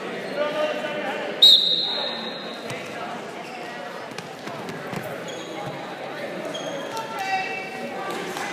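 Voices calling out across a gym during a wrestling bout, with a short, shrill whistle about a second and a half in, the loudest sound, and a few scattered thuds.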